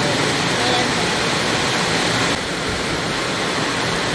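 Heavy rain falling steadily, a dense even hiss, with a faint voice in the background.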